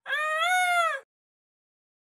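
A peacock giving a single loud call about a second long, its pitch rising and then falling.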